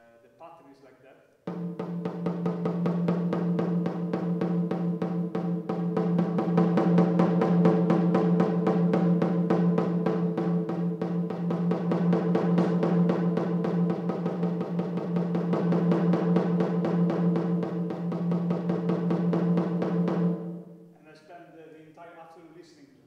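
Snare drum with a small gong, the gong as the struck surface and the drum as resonator, beaten in a fast, even stream of strokes with a mallet in each hand. Under the strokes a steady low ringing tone with overtones builds and holds. It starts suddenly about a second and a half in and stops about a second and a half before the end.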